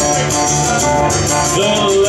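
Live acoustic blues: a strummed acoustic guitar and a keyboard playing together, with a woman's voice between sung lines.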